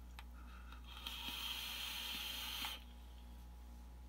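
A long drag on an e-cigarette: a steady airy hiss of air and vapour drawn through the device for about two and a half seconds, louder in its second half, then cutting off.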